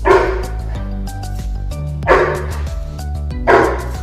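Rottweiler barking three times in deep, loud single barks, the second about two seconds after the first and the third a second and a half later, as a protection response on an attack command.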